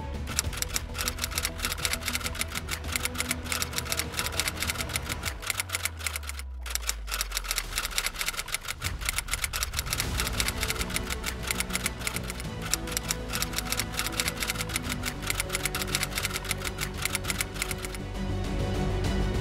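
Rapid typewriter key clicks, many per second, used as a sound effect for text being typed out, over background music. The clicks break off briefly about six and a half seconds in while a low note in the music slides downward.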